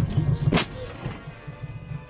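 A car collision: one loud, sharp impact about half a second in as the front of the car strikes another car, over background music.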